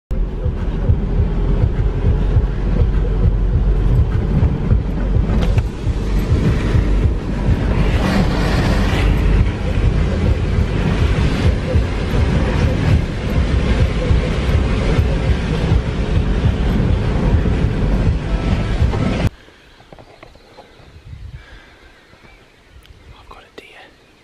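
Loud, steady low rumble of a vehicle being driven, engine and road noise. It cuts off abruptly about 19 seconds in, leaving a quiet outdoor background.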